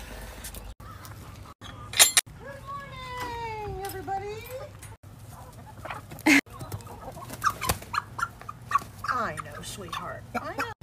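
Hens clucking and squawking while one is chased down and caught by hand. A long drawn-out call of about two seconds comes a few seconds in, with sharp squawks before and after it.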